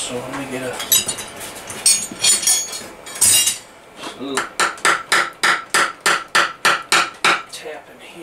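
Hammer blows on the stuck closing plate of a Kohler KT17 twin engine to break it loose: a few scattered metallic clanks, then a quick run of about a dozen ringing strikes, roughly four a second.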